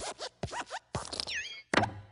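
Cartoon sound effects of the Pixar desk lamp hopping: a quick run of springy squeaks, creaks and small knocks, then a heavier thud with a low ring near the end as it squashes the letter I flat.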